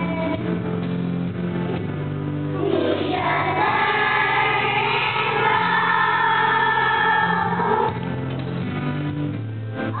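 Young children's choir singing together over a musical accompaniment with steady low sustained notes. The voices come in stronger about three seconds in and drop back near the end.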